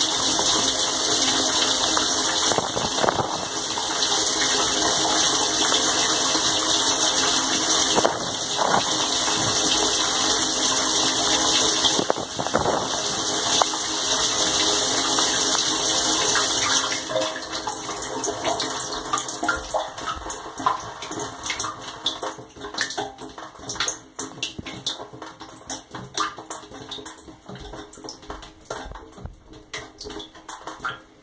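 Dishwasher wash cycle heard from inside the tub: the circulation pump runs and water sprays and splashes over the stainless-steel walls and floor. About two-thirds of the way through, the spray winds down and fades, leaving scattered drips and trickles.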